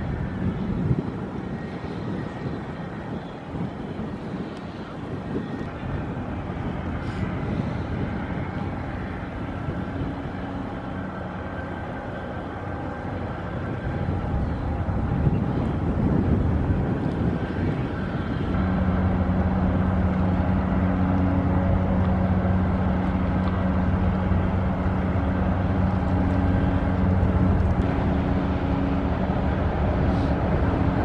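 Low steady hum of a passing chemical tanker's engine over a rumbling noise; the hum becomes louder and more even about two-thirds of the way through.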